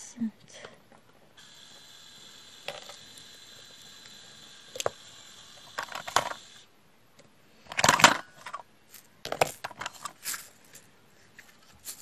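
Small plastic drill tray of resin diamond-painting drills being handled and set down, the loose drills clicking and rattling in short clatters, loudest about eight seconds in.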